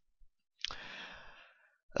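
A person's breath out, like a sigh, into a close microphone. It starts sharply about half a second in and fades away over about a second.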